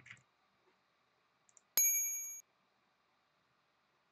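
A single bright electronic ding from the quiz website, the chime for a correct answer: a bell-like tone that starts suddenly about two seconds in, lasts about half a second and cuts off sharply.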